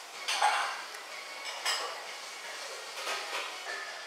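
Ceramic dishes and a spoon clinking on a table: a few separate clinks a second or so apart.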